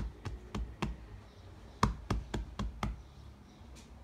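Quick knocks, in two runs of about three or four a second: four in the first second, then five more starting just before two seconds in.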